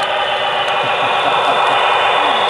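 Loud, steady static-like hiss as an HO-scale model diesel passenger train runs past, the kind of static some of the layout's model locomotives produce.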